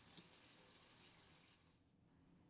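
Faint running water from a bathroom faucet as hands are washed under the stream, dying away near the end.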